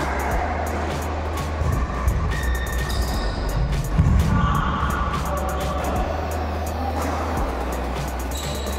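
Background music with a heavy, steady bass line, held tones and a quick run of sharp percussive clicks.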